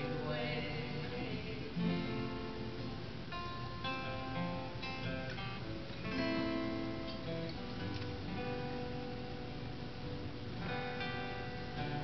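Instrumental break of a folk duet: acoustic guitar strummed, with a five-string banjo picked alongside it.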